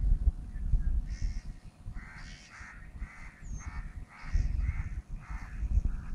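A bird calling in a run of about eight short, harsh calls, over wind rumbling on the microphone.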